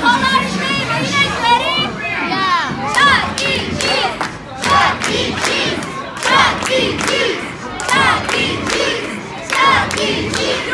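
A group of children shouting and cheering together in loud calls, with hand claps among them.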